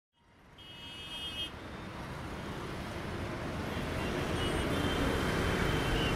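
Congested road traffic of motorcycles, cars and buses, a dense engine rumble fading up from silence and growing louder. A vehicle horn sounds for about a second near the start, and more horn tones come in near the end.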